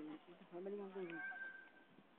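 Faint, distant voices calling out, with a brief steady high tone about halfway through.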